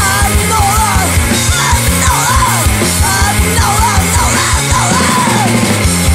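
Punk rock recording: a band playing at full volume, with steady fast drum hits under a yelled lead vocal that wavers and slides in pitch.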